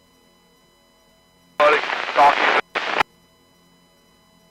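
A short burst of speech over a two-way radio, a garbled transmission of about a second and a half with a brief break, ending in a sharp click as it cuts off.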